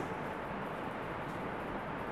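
Steady background room noise, an even hiss with no distinct events in it.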